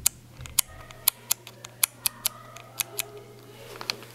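A string of sharp, irregular clicks, about ten of them, close to the microphone, over a steady low hum.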